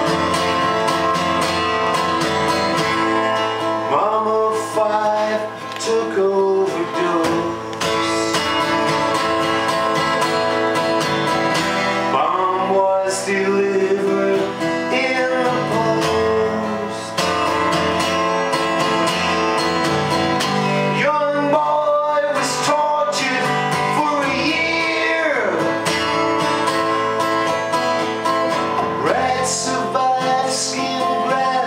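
Steel-string acoustic guitar strummed, with a harmonica played from a neck rack carrying the melody in a wordless instrumental section, including a few bent, sliding notes.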